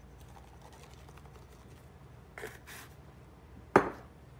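Salt shaken from a small plastic shaker over raw chicken in a slow cooker, with a faint patter of grains and a brief louder hiss about two and a half seconds in. A single sharp knock near the end is the loudest sound.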